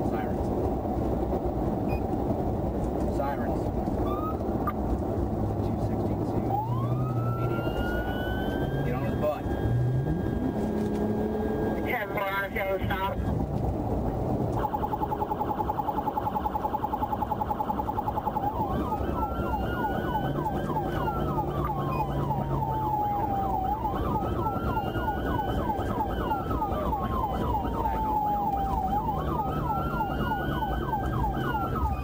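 A police patrol car's electronic siren, heard from inside the car over steady road and engine noise, signalling a driver ahead to pull over. It starts about six seconds in with a rising wail, switches briefly to a fast yelp near the middle, then settles into a slow wail rising and falling every four to five seconds.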